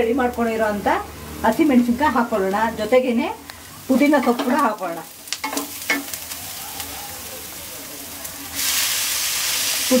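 Wooden spatula stirring chopped onions and green chillies frying in oil in a non-stick pan, with a few sharp scrapes and taps. Near the end the sizzle turns loud and hissing as fresh mint leaves go into the hot oil.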